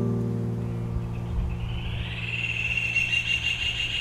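A chord on a classical guitar rings on and slowly fades between strums. About two seconds in, a high-pitched sound swells up in the background and fades again.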